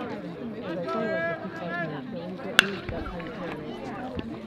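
Baseball bat hitting a pitched ball once, a sharp crack about two and a half seconds in, putting the ball in play as a ground ball. Voices of spectators and players calling out run under it.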